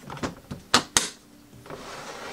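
A Pelican 1606 hard plastic case being shut and handled: three sharp clicks, the loudest two close together about three-quarters of a second in. A scraping rustle follows near the end as the case slides on the table.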